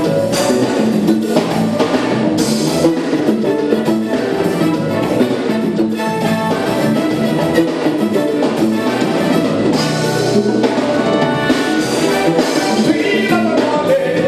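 Live band rehearsing on stage: drum kit and percussion with singing.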